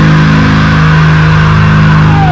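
Heavily distorted electric guitar holding one low sustained note or chord, ringing steadily without a break, in a heavy metal cover.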